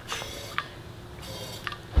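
Primer button on a propane conversion-kit regulator pressed twice, each press letting out a short, faint hiss of gas with a light click: the generator is being primed with propane before starting.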